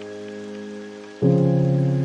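Piano music: a held chord rings, then a louder low chord is struck about a second in and sustains, slowly fading, over a faint steady hiss.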